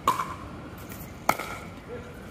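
Pickleball paddles striking the plastic ball twice during a rally, about 1.3 seconds apart: sharp hollow pops, each with a brief ring.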